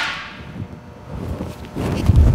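The fading tail of a loud bang from a capacitor blowing apart under a simulated near-lightning surge with no surge protection. It dies away over about half a second, leaving a low, uneven noise.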